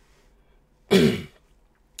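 A man clears his throat once, about a second in: a short, harsh rasp that drops in pitch.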